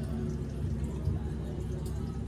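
Water trickling and dripping over a stone Shiva lingam in an artificial cave, with a low-pitched devotional chant playing in the background.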